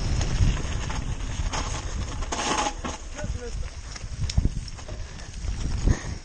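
A mountain bike rattling and knocking on a downhill trail over a steady low rumble, with a short loud hiss about two and a half seconds in and faint voices.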